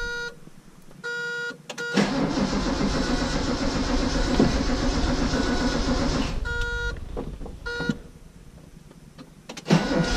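Heard from inside the cabin: the dashboard warning buzzer sounds in short tones, then the starter cranks the Datsun Z's L-series inline-six for about four seconds and stops. The buzzer sounds twice more, and near the end a second start brings a loud burst as the engine fires.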